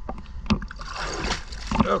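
Water sloshing and splashing around a camera held at the surface against a boat hull, with a rushing burst in the middle and small clicks, over a low rumble of water moving on the microphone.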